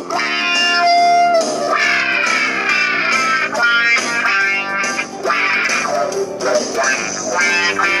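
Electric guitar playing a blues shuffle on a Washburn Stratocaster-style guitar, picked with a homemade pick cut from a coffee cup: a continuous run of single-note lines, with a long held note about a second in and sliding pitches shortly after.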